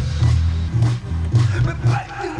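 Live band music: a heavy, repeating electric bass line over a steady drum beat.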